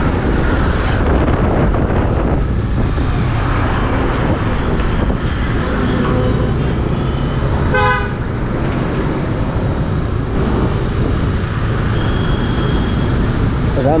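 Riding a motorcycle in city traffic: steady engine rumble with road and wind noise, and one short vehicle horn toot about eight seconds in.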